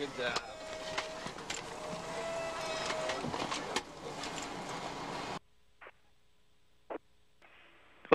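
Steady hiss of space shuttle flight-deck cabin noise, with a thin whistling tone heard twice and a few clicks. It cuts off abruptly about five seconds in, leaving near silence broken by two faint clicks.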